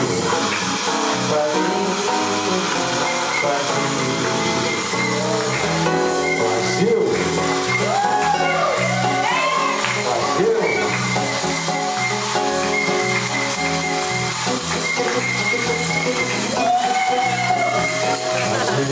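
Samba music: a man singing over acoustic-electric guitar and a steady bass rhythm, with shaken percussion like tambourine or maracas running throughout.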